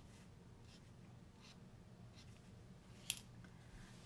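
Faint, quiet scratching of a gold paint pen drawing across the artwork, with a single sharp click about three seconds in.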